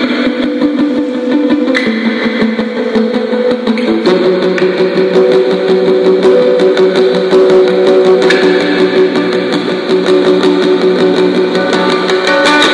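Instrumental post-rock music on guitar: quickly repeated picked notes over held chords, shifting to a new chord about four seconds in.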